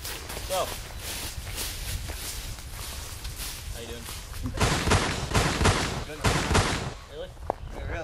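A quick run of about six gunshots, about halfway through and lasting two seconds, over a steady low wind rumble on the microphone.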